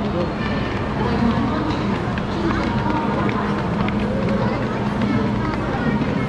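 Footsteps and talking of a crowd climbing a flight of stairs, with a steady low hum underneath.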